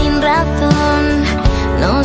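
Pop ballad music: sustained piano and keyboard chords over a steady bass, a drum stroke about every one and a half seconds, and short sliding vocal notes in the gap between sung lines.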